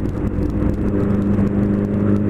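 Honda Hornet motorcycle's inline-four engine running at an even, steady pace while riding along a street, heard from the rider's seat.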